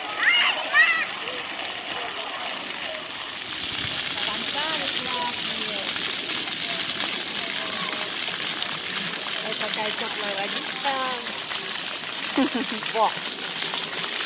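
Ground-level fountain jets spraying and splashing onto wet paving, a steady hiss that grows louder about three and a half seconds in. A child's voice is heard briefly at the start, and faint voices come and go throughout.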